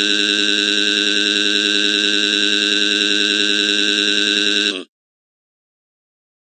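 A text-to-speech voice holding one long, flat-pitched "waaaa" crying wail, cutting off abruptly about five seconds in.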